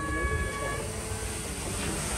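Wind buffeting the microphone with an uneven low rumble. Over it, a steady high horn-like tone sounds for about the first second, then returns faintly near the end.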